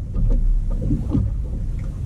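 Wind buffeting the microphone on an open boat, a low uneven rumble.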